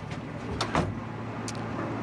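A heavy wooden door swinging shut with a knock about two-thirds of a second in, followed by a short high click, over a steady low hum.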